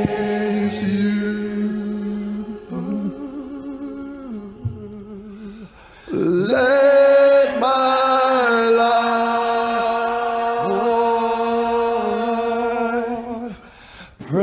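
Men singing a slow worship chorus into microphones over a church PA, drawing each phrase out into one long held note. One note is held until about six seconds in, then a second runs until shortly before the end.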